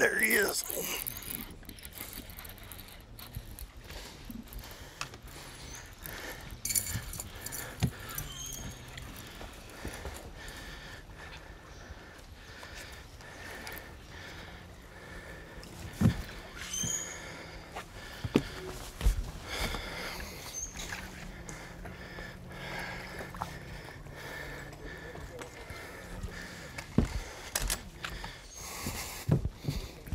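A man's surprised "oh" and a laugh as a bass is hooked, then the fight from a bass boat's deck: scattered sharp knocks and clicks over a low steady hum.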